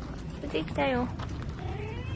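A domestic cat meowing: a short call about a second in that drops in pitch as it ends.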